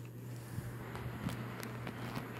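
Sminiker mini USB desk fan with dual plastic blades running with its guard off: a steady low hum from its small motor and blades, with a few faint ticks.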